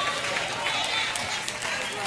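A church congregation's indistinct voices, several calls and murmurs overlapping at a steady, moderate level, with no single clear speaker.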